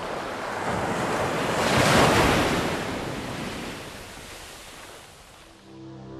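A rush of noise, like a single wave breaking on surf, that swells to its loudest about two seconds in and then fades away over the next few seconds: an edited-in transition sound effect.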